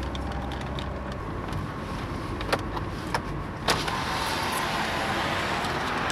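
Car engine running, heard from inside the cabin, a steady low hum with road noise that grows louder about two-thirds of the way through. Two sharp clicks about a second apart in the middle.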